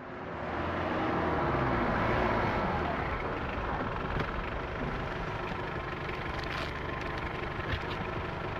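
A car's engine running, swelling in level over the first two seconds and then holding steady, with a few faint clicks in the second half.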